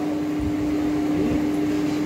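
A steady hum holding one unchanging note, over a low background noise.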